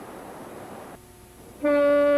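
Faint outdoor background hiss that cuts off about a second in. Half a second later a loud, steady single horn note starts and holds.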